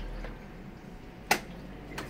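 A single sharp click a little past halfway, as a Lexmoto Arrow 125 motorcycle's gearbox is shifted into third gear, over a low steady hum.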